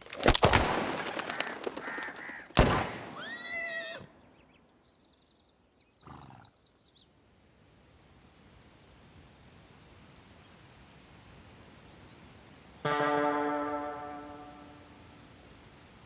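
Two gunshots about two and a half seconds apart, the second followed by a few falling bird calls. Faint birdsong follows, then about thirteen seconds in a single sustained musical note sounds and fades away.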